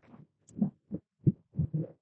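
Four or five soft, dull thumps in quick succession: a plastic pocket insert being handled and pressed into place on a spiral-bound planner.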